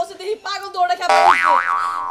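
A cartoon 'boing' sound effect comes in suddenly about halfway through. It lasts about a second, and its pitch springs up and down twice.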